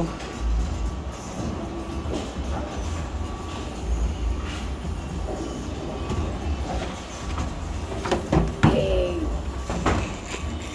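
Bowling alley din: a steady low rumble of bowling balls rolling on the lanes and ball return, with scattered knocks, under background music.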